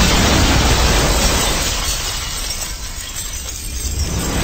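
A loud crash, a shattering burst of noise that fades away over about three seconds, over music with a steady bass.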